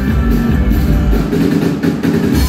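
Rock band playing live, mid-song: strummed hollow-body guitar and keyboard over a drum beat.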